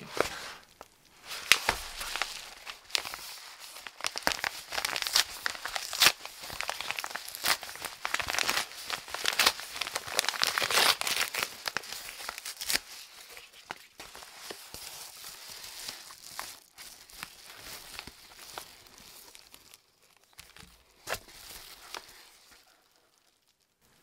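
A white paper shipping envelope being torn open and crinkled by hand. It tears and crackles loudly for the first half, then rustles more softly and fades out near the end.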